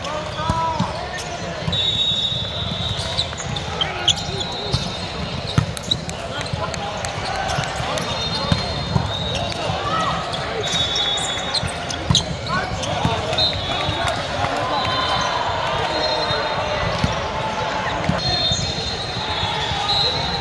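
Din of an indoor volleyball hall during a rally: sharp ball hits and bounces and a steady chatter of voices. Short high-pitched squeals come every few seconds.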